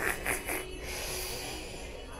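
A man's short breathy puffs through the nose close to the microphone, a brief snort, followed by low shop background noise.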